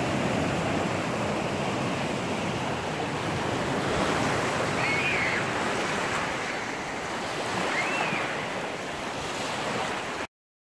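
Small ocean waves washing up onto a sandy beach, a steady wash of surf. Two faint short whistles come about halfway through and again near the end.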